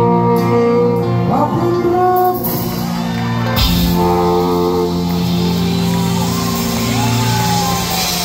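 Live rock band playing, with electric guitar over long held chords that change about three and a half seconds in, and a voice singing.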